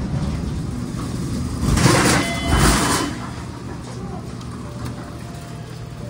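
MEI hydraulic elevator car with a steady low hum. About two seconds in comes a louder rushing noise lasting about a second, with faint high tones in it, then a quieter steady hum.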